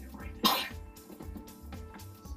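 Background music with a steady beat, and one short cough about half a second in.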